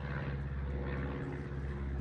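A steady engine drone: an even, continuous low hum.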